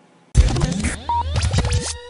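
Short electronic music sting that starts abruptly about a third of a second in, with sweeping rising tones, scratch-like sounds and heavy bass.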